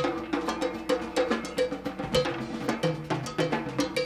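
Live rock drumming on a soundboard recording: a steady, busy percussion pattern of drum hits, with a pitched, bell-like strike repeating about two and a half times a second. Low held bass notes come in near the end.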